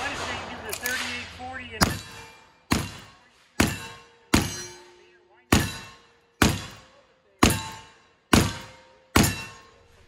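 An 1873 lever-action rifle in .44-40 firing black powder loads in quick succession, nine shots about a second apart from about two seconds in. Each shot is followed by the ring of a steel target being hit.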